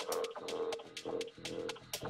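Background electronic dance music: a fast ticking beat of about four ticks a second over a short mid-pitched synth note that repeats on and off.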